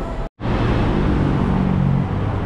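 Road traffic: the steady noise of passing cars, with the low hum of a larger vehicle's engine building in the second half. It starts after a split-second gap of silence.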